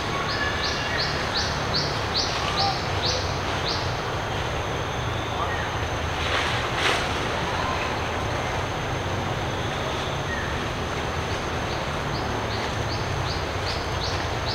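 Forest ambience: a steady high whine, with a short call repeating about two or three times a second that stops about four seconds in and returns near the end, over a low rumble. A brief swish comes about six and a half seconds in.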